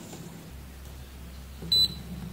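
One short, high-pitched beep from a Kaiweets KM601 digital multimeter near the end, as its probes meet a MELF diode in diode-test mode and it reads a forward drop of about 0.6 V.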